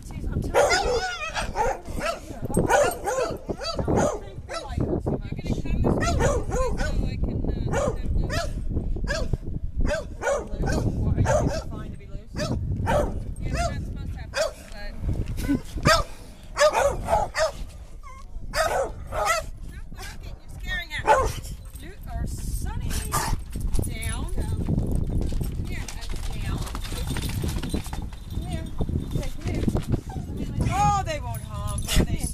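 Dogs barking in short barks on and off, mixed with indistinct voices.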